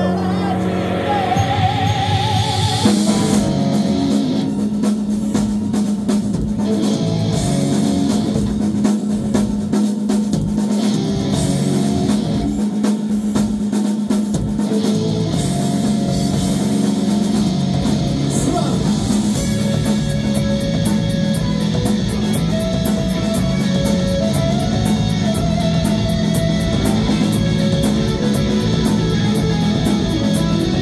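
A rock band playing live: drum kit, electric guitars and bass guitar, with singing and no screaming. A rising build gives way to the full band coming in about three seconds in.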